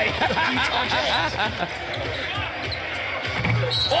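Basketball game sound in an arena: a ball bouncing on the hardwood court amid crowd murmur and voices.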